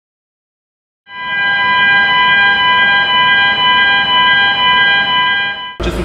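A steady warning alarm from the fixed X-ray container scanner, several tones held together over a low rumble, as the scanner moves along its rails. It starts about a second in and cuts off abruptly just before the end.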